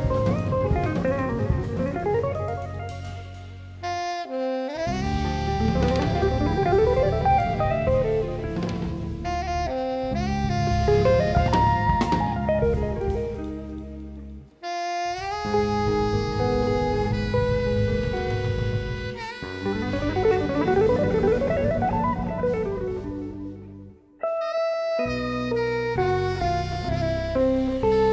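Jazz quartet playing live: soprano saxophone melody with fast rising runs over electric guitar, bass guitar and drum kit. The whole band stops short three times, about four, fifteen and twenty-four seconds in, each time coming straight back in.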